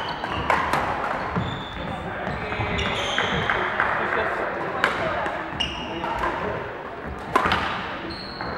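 Badminton rackets striking shuttlecocks, several sharp irregular cracks with some of the loudest near the end, mixed with short high squeaks of sports shoes on the wooden court floor. Behind them is the chatter of players echoing in a large sports hall.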